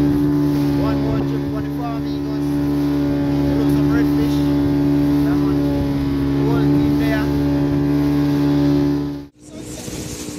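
Outboard motor of a fishing boat running steadily at cruising speed, one even drone, with a voice over it. About nine seconds in the sound cuts off abruptly and gives way to wind and the engine and spray of another boat running over the waves.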